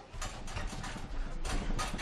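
Irregular knocks, clicks and low thuds from two MMA fighters grappling in a clinch pressed against the cage's chain-link fence.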